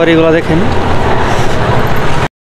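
A voice is heard briefly at the start. After that comes the steady, loud running rumble of a moving vehicle, heard from inside it.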